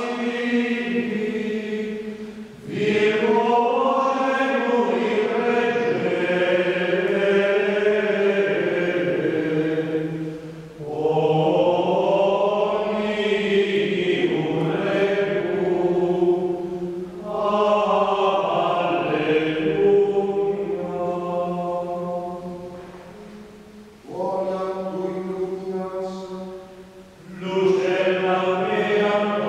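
Ambrosian chant sung by voices in five melodic phrases, with brief breaths between them.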